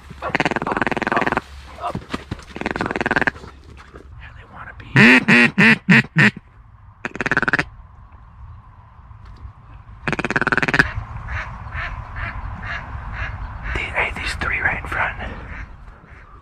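Loud mallard-style duck quacking. There is a run of about six quacks about five seconds in and more quacks near the start and around ten seconds in, then a string of short, quick clucking calls.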